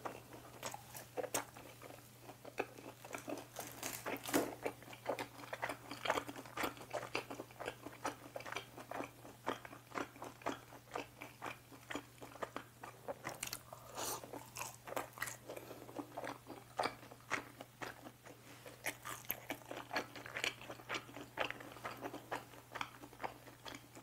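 Close-miked biting and chewing of crispy sweet and sour pork in a glutinous-rice batter (chapssal tangsuyuk), with many small irregular crunches and wet clicks throughout.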